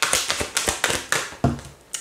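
Tarot cards being handled and flipped over on a table: a quick, irregular run of light taps and flicks of card stock, with a duller knock about one and a half seconds in.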